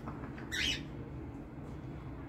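A kitten gives one short, sharp hiss about half a second in, over a steady low background rumble.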